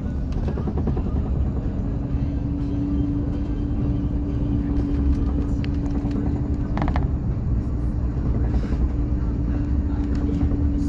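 Steady low rumble of a moving vehicle heard from inside its cabin, with a steady hum from about a second and a half in until near seven seconds, where it stops with a brief higher sound.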